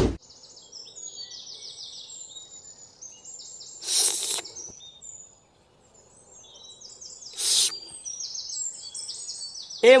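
Birdsong ambience: many short, high chirping calls. It opens with a sharp, loud hit, and two brief bursts of noise come about four and seven and a half seconds in.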